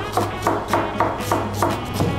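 A chef's knife slicing an onion on a plastic cutting board, with repeated short taps of the blade on the board, over background music.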